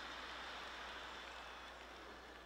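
Theatre audience applauding and laughing after a stand-up punchline, heard as a faint, even wash that slowly dies away.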